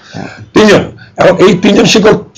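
A man speaking in Bengali, opening with a short throat clearing before the words resume about half a second in.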